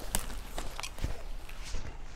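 Nylon travel backpack being lifted overhead and swung onto the back: fabric rustling with irregular clicks and knocks from its straps and buckles.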